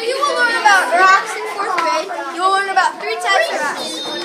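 Children's voices throughout, with no other sound standing out.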